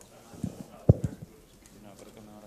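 A few short, dull knocks in quick succession, the loudest a little under a second in, like something bumped or handled close to the microphone.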